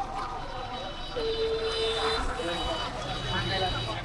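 Busy street ambience: voices of passers-by talking over a low, steady rumble of auto-rickshaw traffic, with one held tone lasting about a second, starting a little over a second in.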